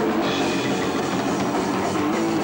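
Hardcore punk band playing live: drum kit and electric guitars, loud and continuous.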